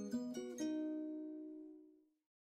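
Background music of plucked strings: a few quick notes, then a final chord that rings on and fades away near the end.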